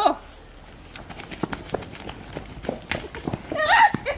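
Children's feet running across grass, a quick patter of light footfalls just after a shout of "Go!" at the start. A child's voice calls out near the end.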